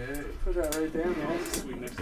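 Men talking in a small room, quieter than the on-microphone talk around it; the words are not clear.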